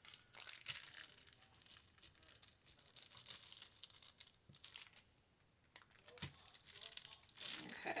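Clear plastic packaging crinkling in light, irregular crackles as it is pressed inked side down onto paper and peeled off again, with a short lull a little past halfway.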